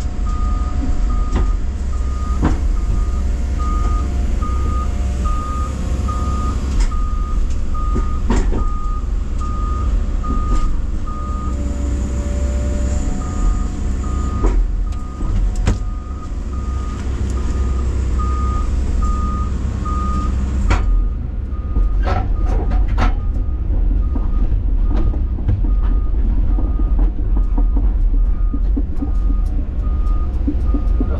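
Hyundai 140 excavator's diesel engine running heavily while its travel alarm beeps steadily about twice a second, heard from inside the cab, as the machine tracks along. Scattered clunks and knocks sound over the engine, and the beeping stops briefly a little before halfway.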